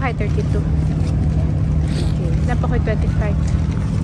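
An engine running steadily nearby, a low continuous hum, with voices talking in the background.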